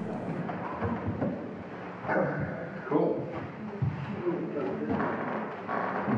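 Indistinct talk among people in the room, with a few louder moments of voice or movement.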